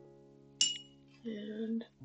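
A glass water jar clinks once, sharp and ringing, as a paintbrush or hand knocks it about half a second in, followed by a short muffled knocking sound around the jar. Soft piano music plays underneath.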